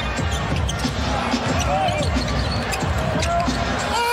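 Basketball being dribbled on a hardwood court, repeated thuds over steady arena crowd noise.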